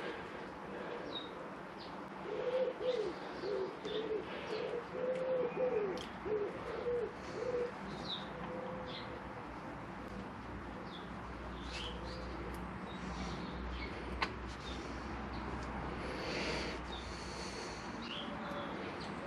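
A dove cooing in a run of repeated phrases for several seconds in the first half, growing faint after that, with small birds chirping now and then.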